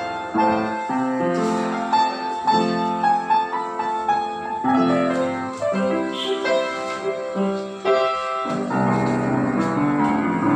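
Yamaha upright piano being played with both hands: a melody in the upper notes over lower chords.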